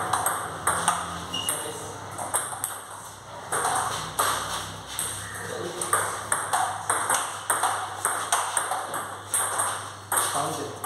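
Table tennis ball clicking back and forth in a rally, struck by the bats and bouncing on the table, several hits a second, with more ball clicks from play at a neighbouring table.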